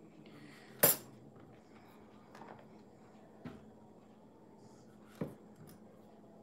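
A kitchen knife knocking on a wooden cutting board as thin slivers are trimmed off the bottoms of mushroom stems. One sharp knock comes about a second in, followed by a few fainter taps.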